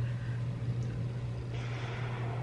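Low, steady rumble of a car engine idling on a film trailer's soundtrack, with a hiss joining about one and a half seconds in.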